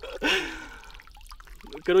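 Pond water trickling and dripping off a man's hands and arms as he stands in the water, with a short voiced exclamation of dismay just after the start and speech beginning near the end.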